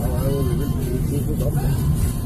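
Steady low road and engine rumble of a moving car, heard from inside the cabin, with a person's voice over it in snatches.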